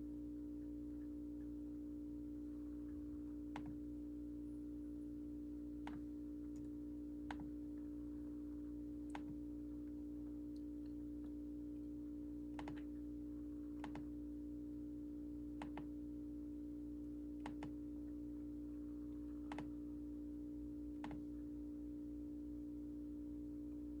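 A steady low hum with faint, isolated clicks every one to two seconds, like occasional keystrokes on a computer keyboard.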